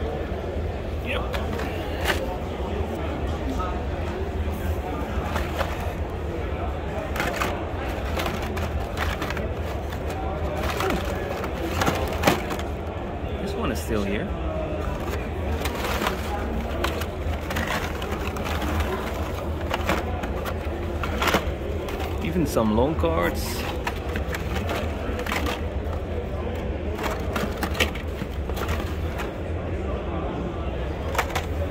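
Blister-carded die-cast toy cars being rummaged through in a bin, the plastic packs clicking and clacking against each other at irregular moments, over a steady background of many people talking in a crowded hall.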